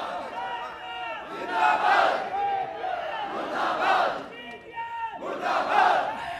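A large crowd of men shouting a slogan together with raised fists, swelling in three loud surges about two seconds apart.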